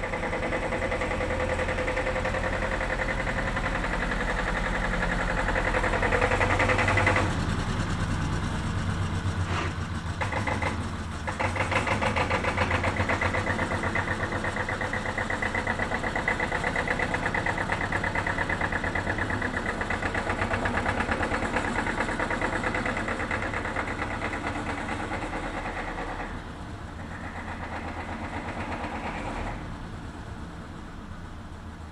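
Old farm tractor engine running with a fast, even beat as the tractor moves about. The sound drops suddenly about seven seconds in, dips briefly around ten seconds, then runs steadily again until it falls away near the end.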